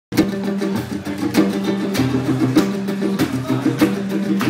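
Acoustic street band playing an instrumental: strummed acoustic guitar and a small plucked string instrument over a steady beat of percussion hits about every 0.6 s. It starts abruptly, a moment in.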